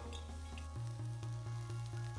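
Background music with a steady low bass line that shifts to a new note about a second in.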